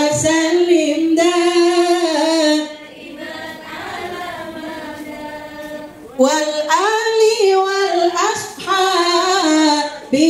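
Women singing together, a slow melody with long held notes; the singing drops quieter from about three to six seconds in, then returns at full strength.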